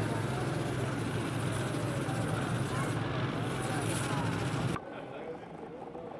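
A steady low vehicle engine hum under indistinct chatter of voices. Near the end the sound drops suddenly to quieter background voices.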